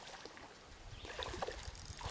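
A hooked smallmouth bass splashing at the surface of a shallow creek as it is played in: faint, irregular little splashes that pick up about halfway through, over the low wash of the water.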